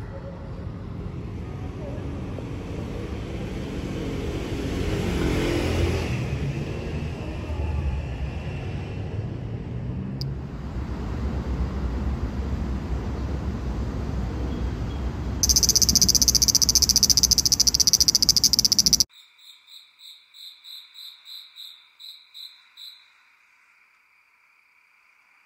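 Outdoor street ambience with low traffic noise, then a loud, high, rapidly pulsing insect buzz for about three and a half seconds that cuts off suddenly. After that come quieter, rhythmic insect chirps, about three a second, over a steady high trill, stopping about a second before the end.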